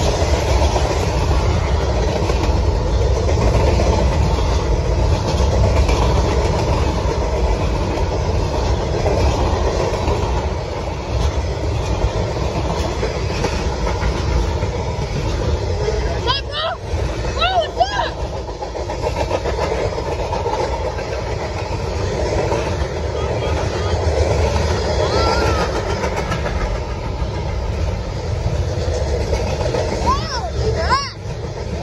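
Freight cars of a long manifest train rolling past close by: a steady, loud rumble of steel wheels on rail.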